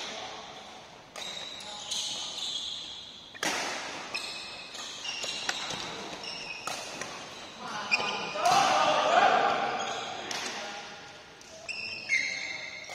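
Badminton rally in a large, echoing hall: sharp cracks of rackets hitting the shuttlecock, short high squeaks of court shoes on the wooden floor, and players' voices, loudest about eight seconds in.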